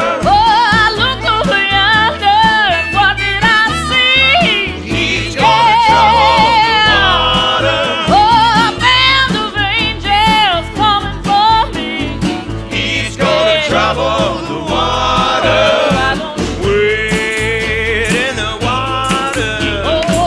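Gospel-blues band music with no sung lyrics: a lead melody that bends and wavers over a steady bass and rhythm pulse.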